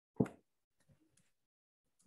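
A single short, dull thump, followed by a few faint clicks of typing on a computer keyboard.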